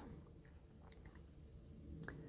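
Near silence: room tone, with a couple of faint soft ticks about half a second and about a second in.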